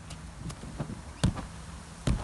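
Bare feet running on grass with a few soft footfalls, then a sharper thump about a second and a quarter in as hands and feet strike an inflatable air track in a round-off.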